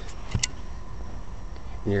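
Light handling of a plastic RC radio transmitter and its battery lead, with one sharp click about half a second in.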